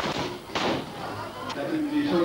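A single loud thump about half a second in over crowd chatter, with a sharp click about a second later.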